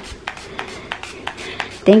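Handheld pump spray bottle of linen fragrance being pumped over a bedspread: a quick run of short hissing sprays, about four a second.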